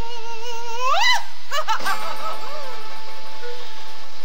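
A woman singing in a theatrical style, holding a long note that swoops sharply upward about a second in, followed by a few short vocal sounds over light musical accompaniment.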